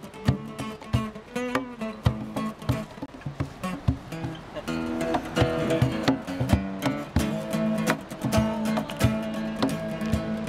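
Acoustic guitar strummed in an instrumental passage of a song, with a cajon keeping a steady beat underneath.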